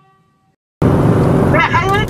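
A ringing tone fades out over the first half-second. After a brief silence, road traffic noise cuts back in a little under a second in.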